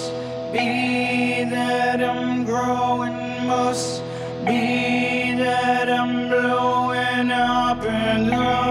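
A live band playing: sustained keyboard chords under a gliding, wordless voice-like melody. Two cymbal hits come, one near the start and one just before halfway.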